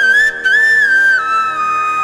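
Devotional background music: a flute playing a melody that slides between notes over a steady drone, settling onto a long held lower note a little past halfway.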